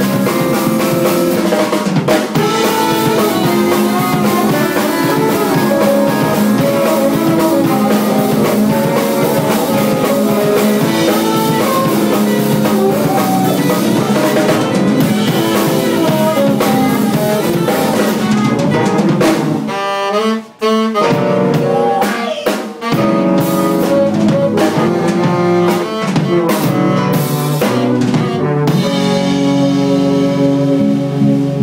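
A live jazz band playing, the drum kit prominent with rimshots and snare, over keyboard, electric bass, saxophone and trombone. The band stops short twice, briefly, about two-thirds of the way through, then plays on.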